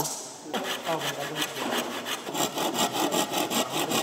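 Quick back-and-forth scraping strokes, like a hand saw or rasp working a board, about five a second, starting about half a second in.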